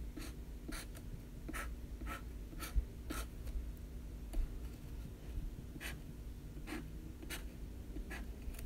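Sharpie felt-tip marker drawing quick short dashes on a yellow legal pad: a run of brief scratchy strokes, about seven in the first three seconds, then a lull and three more near the end.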